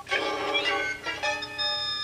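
Channel logo jingle put through a 'G-Major' audio effect: a quick cluster of chiming notes, then a held bell-like chord that rings on from about halfway in.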